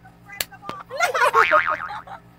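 A cartoon "boing" sound effect about a second in, wobbling in pitch for most of a second, after a single short click.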